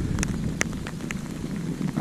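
Rain falling steadily, with a few sharp raindrop taps on the microphone, over low wind rumble.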